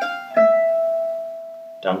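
Gypsy jazz acoustic guitar playing single notes: a high G, just hammered on, is still ringing when a single note is picked about a third of a second in, dropping down to the E. The E rings out and fades away over about a second and a half.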